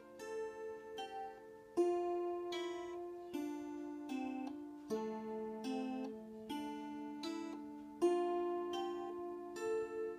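Box zither with open strings plucked one note at a time, a new note about every three-quarters of a second, each ringing on under the next, played as a left-hand picking exercise. Two of the notes, near two seconds in and near eight seconds in, are plucked harder.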